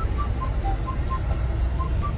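Car cabin noise while driving: a steady low road-and-engine rumble. Over it runs a string of short, high beeping notes at changing pitches, about four a second.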